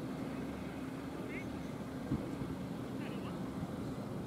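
Steady outdoor background at a cricket ground: a constant low hum with a faint distant voice or two and a couple of brief high chirps.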